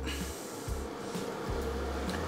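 Steady faint hiss with a low hum: kitchen room noise.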